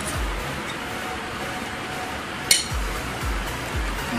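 A metal fork scraping and clinking against a glass bowl as boiled eggs are mashed, with one sharp clink about two and a half seconds in. Background music with a low beat runs underneath, its beat coming back strongly in the second half.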